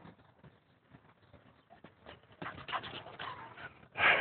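A small dog running up close along a concrete path. Its quick footsteps and breathing grow louder from about halfway through.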